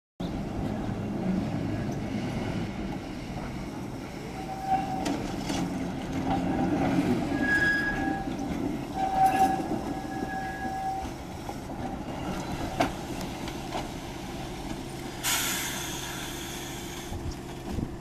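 Pacific Electric electric streetcar rolling slowly on the rails, with a steady low rumble. Thin, drawn-out wheel squeals come and go in the middle, and there are a few sharp clicks. A hiss lasting about two seconds comes near the end.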